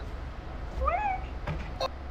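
A single short meow-like animal call about a second in, rising in pitch and then levelling off, followed by a brief click.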